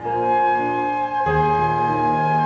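Two flutes and a cello playing a slow classical trio in sustained notes. A new chord begins at the start, and the cello moves to a strong low note a little past halfway.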